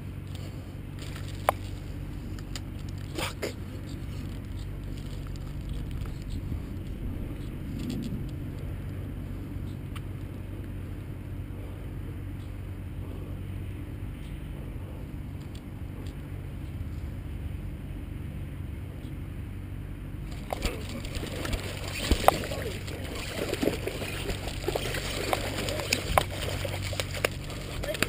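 Steady low background hum with a few light clicks, then, about two-thirds of the way through, irregular splashing and rustling with sharp knocks and clicks as a hooked bowfin is fought and dragged up onto the grassy bank.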